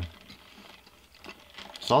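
A few faint, ratchet-like clicks from a plastic straw being worked in the lid of a fast-food drink cup, before a voice starts speaking near the end.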